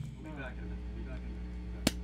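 Steady electric hum from the band's amplifiers, with faint voices early on and a single sharp snap near the end.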